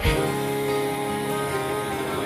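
Slow recorded song with long held instrumental notes, playing for a couple's dance; a new chord comes in right at the start.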